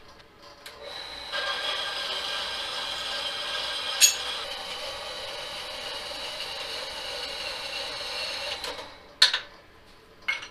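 Small horizontal metal-cutting band saw running through quarter-inch aluminum plate, a steady whine over the sound of the cut. It starts about a second in, with a sharp click about four seconds in, and stops near the end, followed by a sharp metallic clink.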